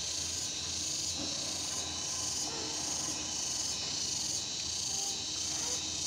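Steady high-pitched drone of insects calling outdoors, pulsing slightly and evenly throughout.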